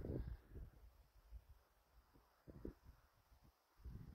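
Near silence outdoors, with a few faint, short low rumbles of wind on the microphone.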